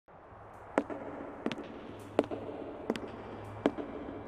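A run of sharp clicks, about one every 0.7 seconds with fainter ticks in between, over a faint low hum.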